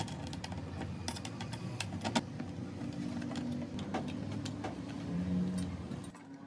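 Hand screwdriver driving screws into a metal rack frame, with scattered clicks and light knocks from the screwdriver and the wooden shelf boards being handled. Brief squeaking tones come about halfway through and again near the end.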